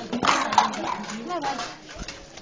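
Indistinct voices of several people talking and calling out, louder in the first second and a half and then quieter.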